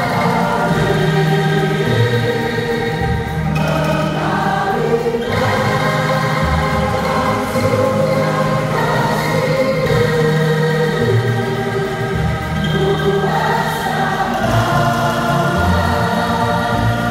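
Bamboo angklung ensemble shaken in held notes, playing a hymn tune, with a choir of voices singing along.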